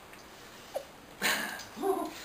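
A brief breathy burst about a second in, then a short rising yelp-like vocal sound near the end, with quiet room tone before them.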